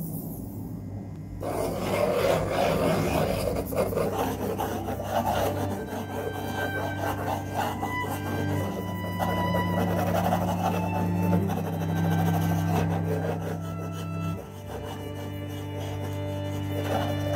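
Graphite pencil scratching and rubbing on drawing paper in light sketching strokes, starting about a second and a half in, over background music with sustained low notes.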